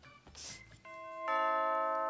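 Doorbell ringing a two-note ding-dong: the first note sounds just under a second in and the second a moment later, both held.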